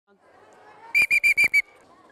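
A hand-held plastic whistle blown in five quick short blasts about a second in, one steady high note each, keeping time for a marching drill. Faint children's chatter underneath.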